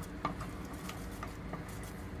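Wooden spatula stirring a thick sauce in a stainless steel pot: faint stirring with a few light knocks of the spatula against the pot.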